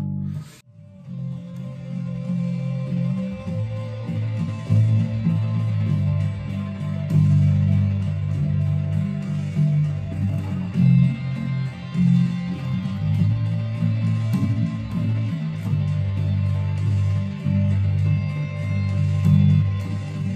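Electric bass played solo, repeating a slow riff of held notes F, A and G low on the E string, each note changing every few beats.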